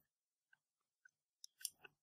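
Near silence, with a few quiet clicks near the end: a plastic power connector being handled at the fan controller as the power is taken off.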